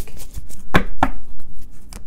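A deck of tarot cards being handled and shuffled, with a few sharp taps of the cards against the table, the two loudest close together near the middle.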